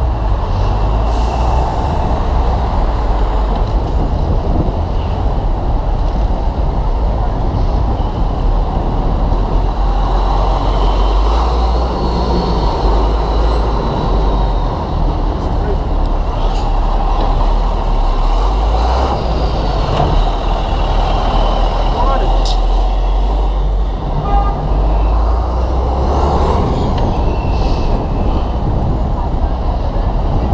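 Dense city street traffic heard from among the vehicles: a steady, loud rumble of engines and road noise from cars, taxis, trucks and buses.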